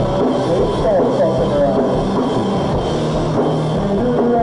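Live rock band playing, with electric guitars and a drum kit at a steady, loud level.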